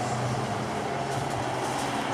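Steady low mechanical hum over street noise, unchanging throughout.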